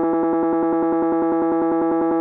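Phase Plant's sampler holding one note from an electric piano sample set to infinite looping. A short loop segment repeats about twelve times a second, so the note comes out as a steady, evenly pulsing buzz.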